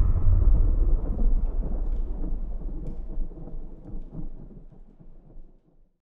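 A low rumble, like distant thunder, left after the music cuts off, with faint crackles in it, fading away steadily until it is gone near the end.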